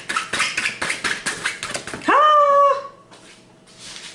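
Cards being shuffled and handled, a quick run of clicks and rustles, followed about two seconds in by a short, high, held whine lasting under a second.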